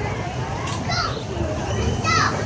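Indistinct voices of people in the background, children among them, over a steady low rumble, with a brighter high call about a second in.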